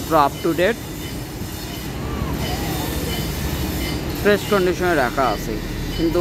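Steady low rumble of road traffic passing close by, with a man's voice briefly at the start and again about four seconds in.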